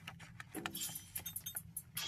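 Scissors cutting through a printed photo on paper: a quick run of snips and clicks of the blades.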